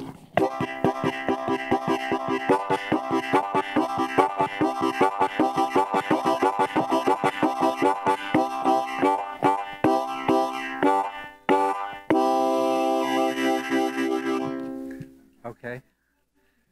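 Diatonic harmonica (blues harp) playing the train-whistle imitation. Rapid, even chugging chords come about four times a second, then a long held chord near the end fades away.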